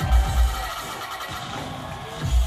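Live music through a venue's sound system, recorded from inside the crowd: two heavy bass hits near the start, over a held high note that fades out within the first second.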